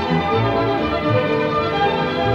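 Symphony orchestra playing a lively dance tune at full strength: flutes and violins in fast running figures over a bouncing cello and double-bass line, with horns holding chords.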